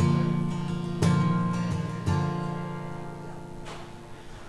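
Acoustic guitar strummed three times, about a second apart, each chord left to ring and fade out.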